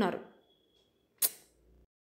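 A woman narrating in Telugu finishes a sentence, and her voice trails off. A pause follows, broken about a second in by one short, sharp mouth noise.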